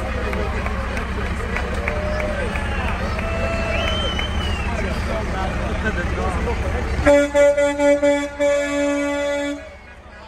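A parade vehicle's engine running low under nearby voices, then about seven seconds in its horn sounds: a few quick toots followed by a held blast that cuts off suddenly.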